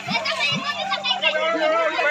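A group of children shouting and chattering excitedly, many voices at once, during a game of musical chairs.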